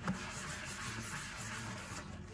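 Sponge scrubbing a stainless steel sink through thick dish-soap foam: a steady rubbing, swishing sound, with a brief knock just at the start.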